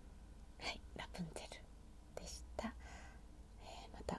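A woman whispering in Japanese in a few short phrases, with pauses between them.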